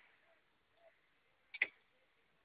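A quick double click about one and a half seconds in.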